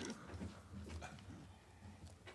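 Faint shuffling and scattered light clicks of people getting up from their chairs, over a low steady room hum.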